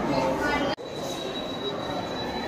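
Background chatter of a busy exhibition room, broken by an abrupt cut a little under a second in; after the cut a thin, steady high-pitched tone sounds over the chatter.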